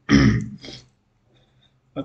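A man coughing to clear his throat: one loud burst and a shorter, quieter one just after it.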